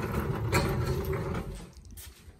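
Rough scraping and rustling handling noise as things are shifted about, with a sharper scrape about half a second in. It fades away near the end.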